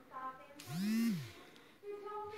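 A brief whir that rises and then falls in pitch, with a hiss over it, lasting under a second.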